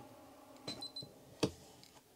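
Büttner ICC Info Control panel of a 3000 W inverter-charger giving three quick, high, faint beeps as its button is pressed to switch it off, with a few soft clicks and a sharper click about a second and a half in.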